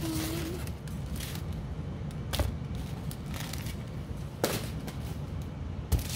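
Plastic packaging of a diamond painting kit handled on a wooden table: a bag of drill packets and a plastic-wrapped rolled canvas rustling and crinkling, with sharp snaps or knocks about two seconds in, at about four and a half seconds, and near the end.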